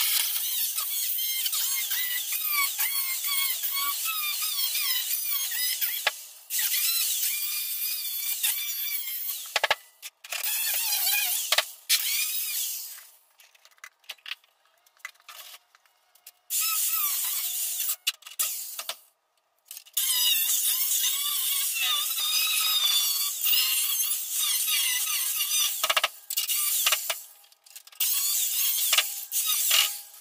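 Angle grinder with a cut-off wheel cutting through a car's sheet-metal hood: a shrill, wavering whine in long runs of several seconds that stops and starts again several times.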